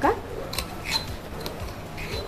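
A steel spoon lightly scraping and clicking against steel utensils while handling freshly ground garlic-ginger paste: a few faint, short clicks, one with a brief metallic ring about a second in.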